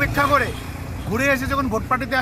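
A man speaking, with the low, steady rumble of road traffic behind his voice.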